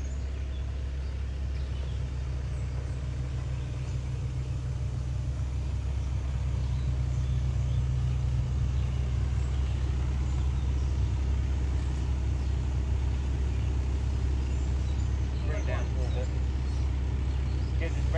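Excavator's diesel engine running steadily with a low drone, a little louder from about six seconds in. Brief voices near the end.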